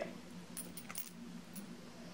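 A few faint, light clinks of glass perfume bottles with metal caps and charms being handled, over a low steady room hum.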